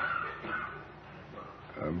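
A pause in a man's sermon: faint hiss and room noise of an old recording. A drawn-out spoken 'uh' comes just before the end.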